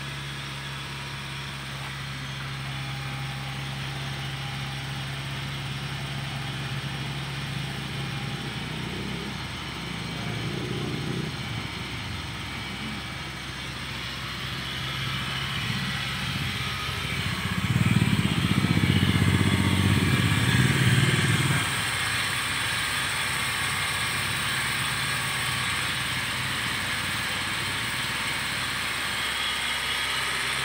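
Honda Jazz four-cylinder petrol engine idling steadily at the exhaust. The engine noise grows louder twice: briefly about ten seconds in, and more strongly for about four seconds some eighteen seconds in.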